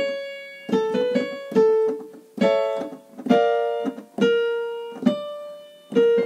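Piano accompaniment playing a vocal-exercise pattern. Notes or chords are struck a little less than once a second, each ringing and fading before the next, and the melody steps up and down.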